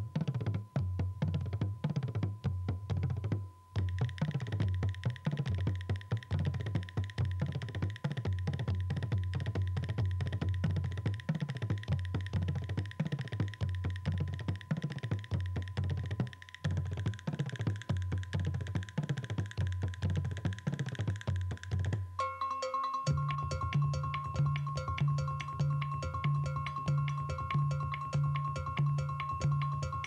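Bodhrán played in a fast, dense rhythm with the tipper, its low drum notes bending in pitch as the hand presses the back of the skin, over a steady high held tone. About 22 seconds in the texture changes to a repeating pattern of ringing, bell-like pitched notes.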